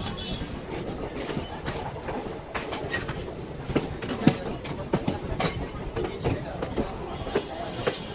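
Passenger train running, heard from an open coach door: a steady rumble with irregular sharp clacks of the wheels over rail joints.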